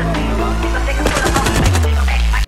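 Electronic intro music with a heavy bass line. About a second in, a rapid burst of gunfire from an AK-pattern rifle comes in over the music, with shots close together.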